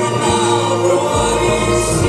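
Four male voices singing together in harmony over a live backing band, with a low bass line moving under held notes.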